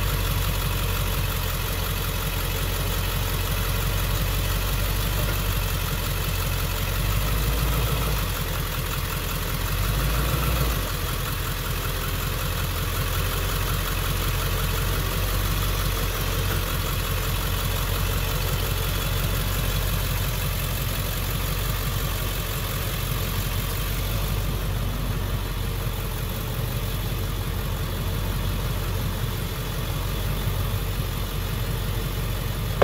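A vehicle engine idling steadily, its low hum swelling briefly about eight and again about ten seconds in.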